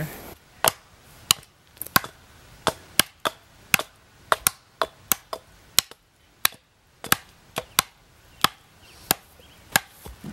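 Axe blows chopping into a log: about twenty sharp strikes at an uneven pace, roughly two a second, with a short lull near the middle.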